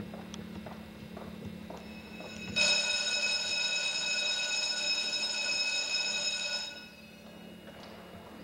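Footsteps clicking on a hard hallway floor, then a wall-mounted electric bell rings loudly and steadily for about four seconds, starting suddenly and fading out.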